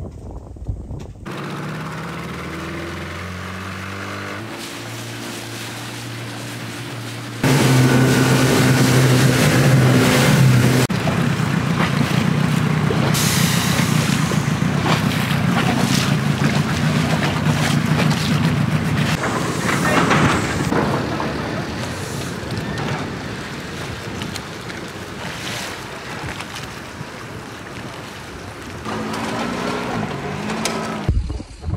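Small outboard motor on an inflatable dinghy running under way, its pitch rising as the tiller throttle is twisted open. About seven seconds in it jumps suddenly to a much louder engine sound. This eases over the second half into a rougher mix of engine and machinery noise.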